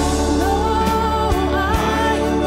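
Live worship band music: a sung melody over keyboards, bass and a drum kit, with steady drum and cymbal strikes.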